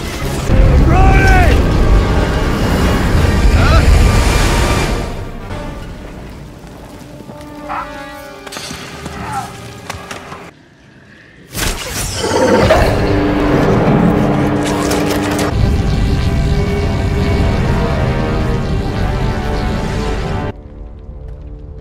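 Film soundtrack mix of deep booms and rumbling destruction under dramatic music. It falls almost silent for about a second just past the middle, then swells loud again with held low tones.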